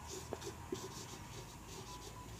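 Felt-tip marker writing on a whiteboard: a series of faint scratchy strokes with a couple of light ticks as a word is written.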